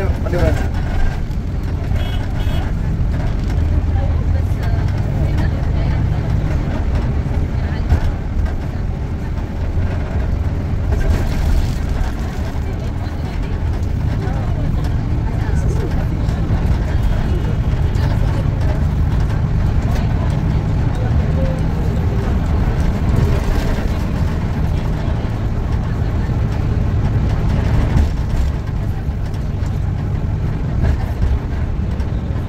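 Steady low rumble of a car's engine and tyres heard from inside the cabin while driving on city streets.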